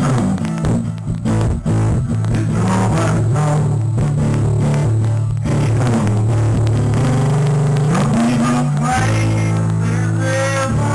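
Acoustic guitar strummed live over a looped, pre-recorded guitar part played back from a Boss RC-2 loop pedal, with steady low bass notes running underneath.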